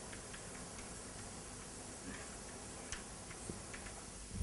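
Chalk on a blackboard: a few faint, irregular taps and ticks as it writes, the sharpest about three seconds in, over a steady low hiss of room noise.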